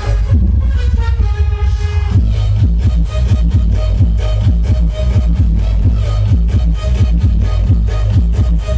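DJ dance music played loud through a large outdoor stage sound system, with heavy bass. A steady driving beat comes in about two seconds in, after a short stretch of held synth tones.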